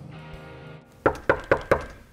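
Four quick knuckle knocks on a door, about a quarter second apart, after background guitar music stops about a second in.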